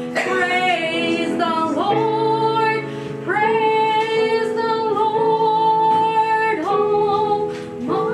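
A woman singing solo, holding long sustained notes with slight vibrato; the longest is held about three seconds through the middle.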